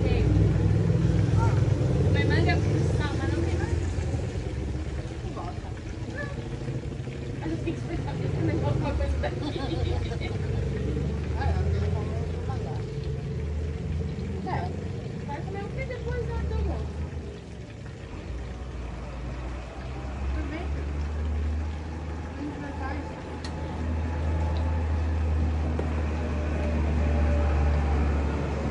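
Idling diesel truck engine, a steady low drone that grows stronger in the second half, with indistinct voices in the background during the first half.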